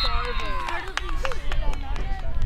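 Voices of players and spectators shouting and calling out across an open field, with a steady low wind rumble on the microphone.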